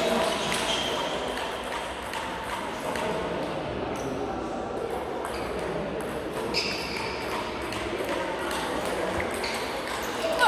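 Table tennis ball clicking sharply off the bats and table, a few hits spaced seconds apart, over a murmur of voices in a large sports hall.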